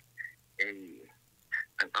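A man speaking haltingly: a drawn-out "a", a pause, then "an".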